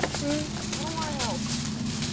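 Faint voices in the background, with a few rising and falling speech-like phrases, over a steady low hum.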